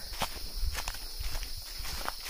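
Footsteps crunching and rustling through dry fallen rhododendron leaves on the forest floor, several uneven steps. A steady high insect chirring runs behind them.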